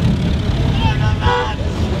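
Car engines running in a slow-moving convoy, a steady low rumble, with laughter and shouted voices over it about a second in.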